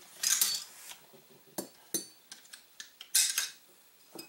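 Metal clicks and clatter from an AR-15 rifle being handled on a workbench: a few sharp clicks, with two brief scraping, rustling noises near the start and about three seconds in.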